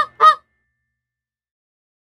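A goose honking twice in quick succession.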